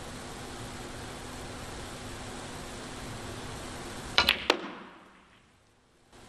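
Snooker balls clicking: three sharp clicks about four seconds in, from cue tip on cue ball and ball striking ball, over a steady hush in the arena. The sound then fades out.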